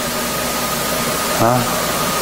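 A pause in a man's talk filled by steady background hiss with a thin, high, steady tone, then a short spoken "Huh?" about a second and a half in.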